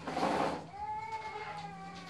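A brief breathy hiss, then one long, nearly even-pitched high call or whine lasting just over a second.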